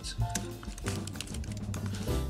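Computer keyboard typing, a quick run of key clicks, over background music with a steady low bass line.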